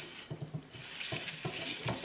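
Clear plastic spiral of a Lomo UPB-1 developing tank spinning on its spindle as Super 8 film feeds into its groove: rapid light clicking with a dry hiss that grows louder just under a second in.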